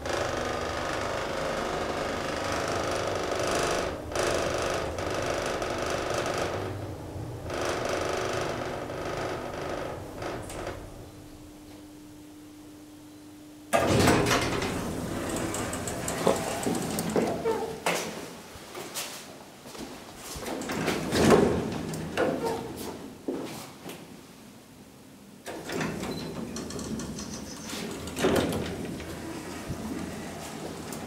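Deve-Schindler D-series roped-hydraulic elevator running during travel: a steady hum carrying one held tone, which eases off about 11 seconds in as the car comes to a stop. About 14 seconds in a sudden loud sound marks the car's sliding doors opening, followed by irregular knocks and thuds.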